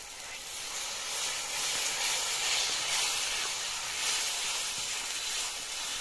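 Spiced masala for a young-jackfruit curry sizzling and hissing in hot oil in a wok, a steady frying hiss that grows louder about a second in as it is stirred.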